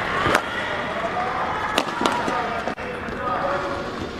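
Badminton rally: racket strings hitting a shuttlecock back and forth, with sharp cracks about a third of a second in and again near two seconds in.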